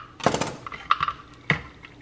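Hard plastic clicks and a short clatter as a hinged plastic bagel-slicing guide is opened and a knife is laid down on a stone counter. There is a noisy clatter about a quarter second in, then two single clicks later on.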